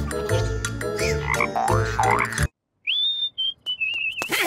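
Cartoon score and comic sound effects with sliding pitches over a bass line. It cuts off suddenly about two and a half seconds in, and after a brief silence a short warbling whistle follows.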